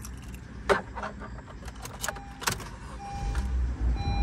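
A few sharp clicks and a short electronic chime, then the 2020 Honda HR-V's 1.8-litre four-cylinder engine starting about three seconds in and running at a low, steady level.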